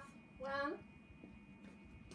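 A woman's voice saying 'one' once, in a sing-song counting tone, then quiet room tone.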